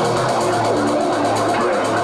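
Electronic dance music with a fast, steady hi-hat pulse. The deepest bass drops out at the start.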